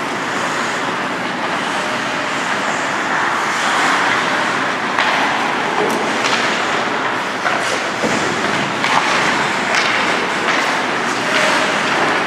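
Ice hockey skates gliding and scraping on rink ice in a steady hiss, with a few sharp clacks of sticks and puck scattered through it.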